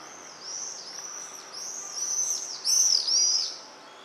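A group of swifts screaming in flight: a string of short, shrill calls that rise and fall in pitch, several overlapping, growing louder to a peak about three seconds in and then dropping away.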